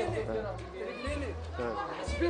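Indistinct talking and chatter from several people, over low bass notes of background music.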